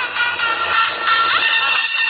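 Electronic dance music playing loud on a car sound system.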